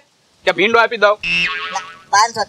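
A brief spoken word, then a comic sound effect added in the edit: a ringing, pitched tone that fades away over about a second.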